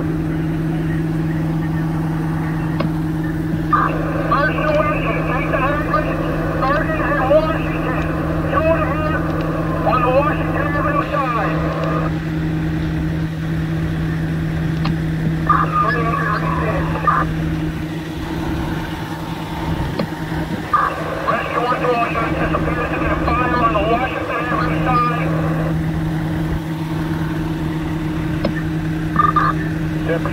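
Parked fire apparatus diesel engine idling with a steady low drone, while stretches of indistinct radio voices come and go over it.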